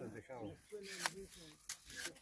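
Low, indistinct talking among a small group, broken by two sharp clicks, one about a second in and one near the end.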